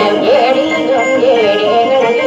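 A man singing a Maguindanaon traditional song in a wavering, ornamented melody, accompanied by a plucked acoustic guitar.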